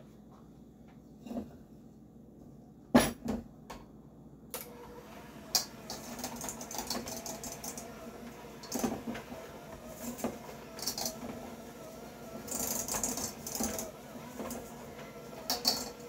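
Electric hand mixer creaming softened butter and sugar in a stainless steel bowl: a single knock about three seconds in, then the motor starts about four and a half seconds in and runs steadily, with the beaters rattling against the bowl now and then.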